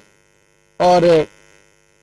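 A man says a single short word; under it runs a faint, steady electrical hum.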